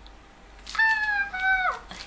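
A woman's high-pitched squealing vocalisation of two held notes, the second a little lower and sliding down at its end, starting just under a second in.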